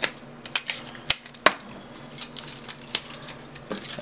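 Hands handling adhesive tape and aluminium foil, giving a few scattered sharp clicks and crackles, most of them in the first second and a half, over a faint steady low hum.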